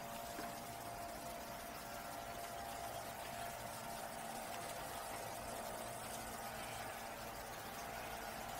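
A steady, faint mechanical hum with two held tones, one high and one low, over an even background hiss.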